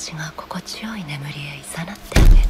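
A woman's voice speaking softly in Japanese, close and whispery: anime voice acting delivering a seductive line.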